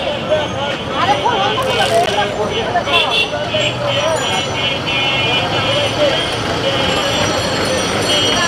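Voices chattering over street traffic noise, with the steady hum of a spinning cotton candy machine underneath.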